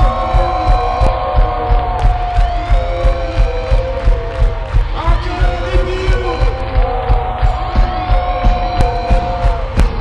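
Rock band playing live in an arena, recorded from the crowd on a phone: a heavy kick-drum beat about twice a second under held, gliding melody lines, with crowd noise.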